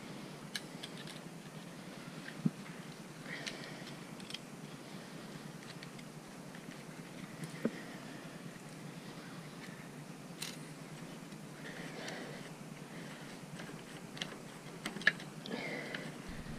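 A screwdriver and hose clamp being handled on a fibreglass-wrapped motorcycle exhaust pipe: a few scattered small clicks and taps over low background noise.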